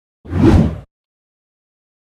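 A short whoosh transition sound effect, a little over half a second long, swelling and then fading away, marking the cut to a chapter title card.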